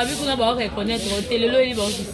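Speech: a person talking continuously, in a language the recogniser did not catch.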